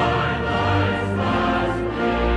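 A choir singing with orchestral accompaniment, in long held notes.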